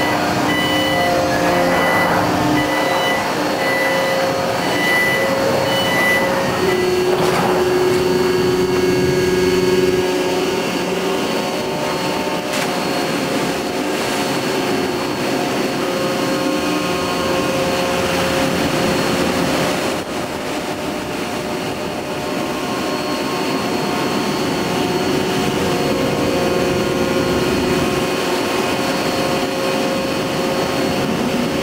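Steady machinery drone from an anchor-handling vessel's deck machinery as the remote-controlled Triplex multi-deck handler works, with several whining tones that shift in pitch about seven seconds in. A run of evenly spaced beeps sounds over the first six seconds.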